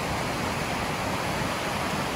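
Fast mountain stream rushing over a rocky bed: a steady, even rush of water.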